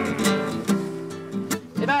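Acoustic guitar chords strummed and left to ring, fading away.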